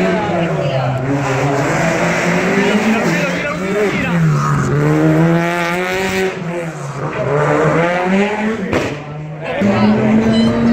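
Rally car engine revving hard on the stage, its pitch repeatedly falling and climbing as it changes gear, with a short drop in loudness near the end.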